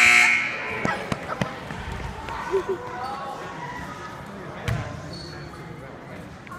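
Gym scoreboard buzzer sounding and cutting off about half a second in. It is followed by a few sharp basketball bounces on the hardwood floor, with voices murmuring in the echoing gym.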